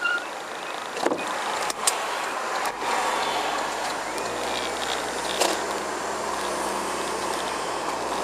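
Road and engine noise heard from inside a car moving slowly, with a few sharp clicks or knocks in the first half, and a steady low engine hum from about three seconds in.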